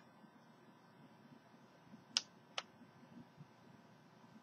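Two short button clicks about half a second apart, from keys being pressed on a Tecsun PL-360 (CountyComm GP-5DSP) pocket shortwave radio as it is switched off, over otherwise near-silent room tone.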